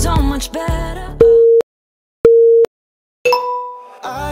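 Workout interval timer counting down the end of a set: two short beeps about a second apart, then a longer tone that fades out. Pop music plays for the first second, then drops out under the beeps.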